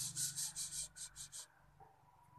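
Quick, rhythmic scratchy rubbing, several strokes a second over a low steady hum, stopping about one and a half seconds in.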